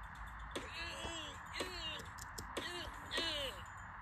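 Cartoon character voices: about five short voiced sounds with rising and falling pitch but no clear words, played back from a screen over a steady hiss.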